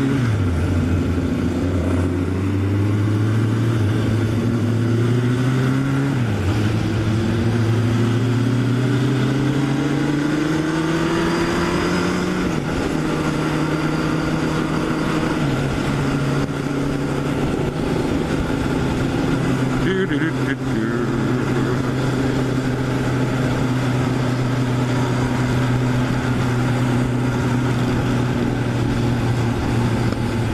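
Inline-four motorcycle engine accelerating hard through the gears, its pitch climbing and dropping at upshifts near the start and about six seconds in, then easing to a steady cruising note for the second half. Wind rushes over the microphone throughout.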